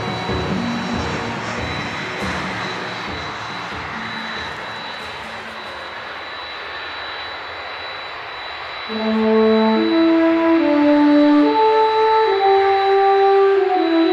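Jet airliner engines with a steady high whine, fading as the aircraft moves away down the runway, under background music. The music swells about nine seconds in with sustained horn-like notes and covers the engine sound.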